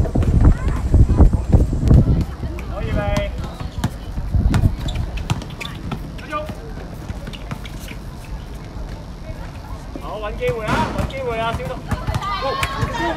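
Basketball bouncing on an outdoor court during play, with voices calling out about three seconds in and again louder near the end.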